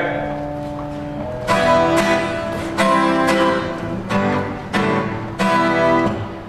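Live band music: a held chord, then a series of struck chords from about a second and a half in, spaced roughly half a second to a second apart.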